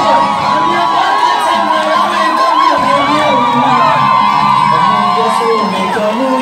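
A crowd cheering and shouting, many voices at once with high, wavering cries.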